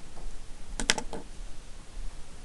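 A quick run of three or four light clicks a little under a second in, over a faint low steady hum.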